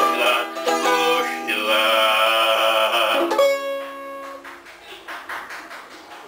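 Cavaquinho strummed through a song's closing bars, ending on a final chord a little over three seconds in that rings out and fades.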